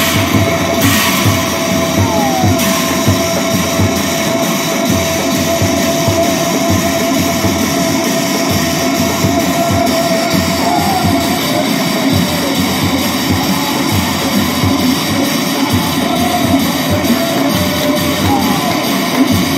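Nagara naam devotional music: large nagara drums beating a steady, driving rhythm under continuous clashing of big brass cymbals. A steady held tone sounds over the first half.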